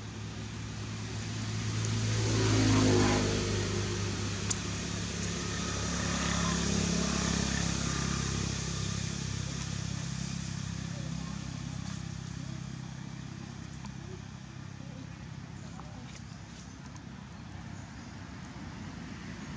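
A motor vehicle passing nearby, its engine getting louder to a peak about three seconds in, swelling again around seven seconds, then slowly fading away.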